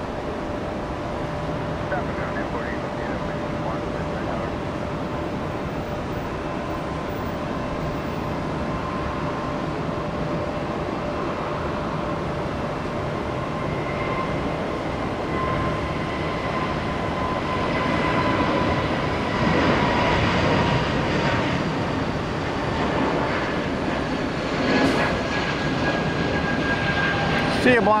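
Airbus A320neo jet engines at takeoff power: a steady jet roar with whining tones that slowly fall in pitch, growing louder through the second half as the jet rolls and climbs away.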